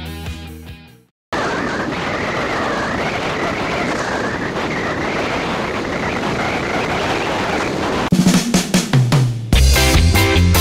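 Backing music fades out, then after a short silent gap a long, even snare drum roll runs for about seven seconds before breaking into separate drum hits as the rock track comes back in near the end.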